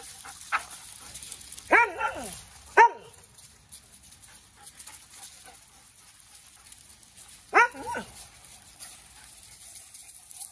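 Dog barking in two short bouts: two or three barks about two seconds in, then two more a little before the end, the second of these quieter.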